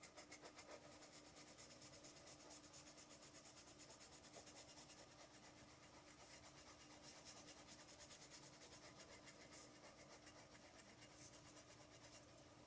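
Pencil eraser rubbing rapidly back and forth over bare wood, erasing pencil guide lines around a wood-burned signature. Faint, several strokes a second.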